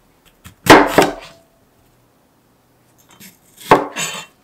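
A broad kitchen knife cutting through a red bell pepper and onto a cutting board: two short cuts, about a second in and near the end.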